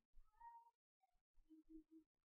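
Near silence, with a few faint, brief tones in the background: one early on and three short ones in a row near the end.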